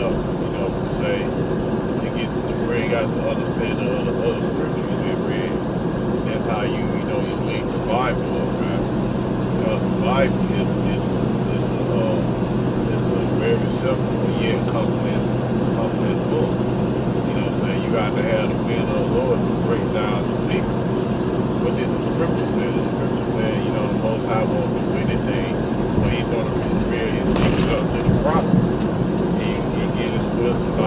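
Steady road and engine noise inside a moving vehicle's cabin at highway speed, with faint, indistinct voices under it.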